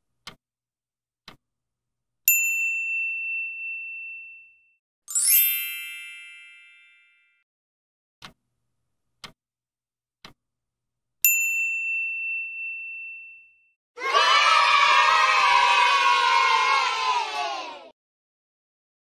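Quiz-timer sound effects. A clock ticks about once a second, and a bell dings about two seconds in and again about eleven seconds in, each ringing away over a couple of seconds. A bright chime sounds about five seconds in, and a crowd cheering effect fills the last four seconds.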